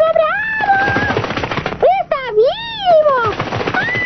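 A wordless cartoon voice warbling up and down in pitch over a fast rattling clatter of clicks, loudest in the first half.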